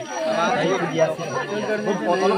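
A crowd of people talking over one another, several voices overlapping at once.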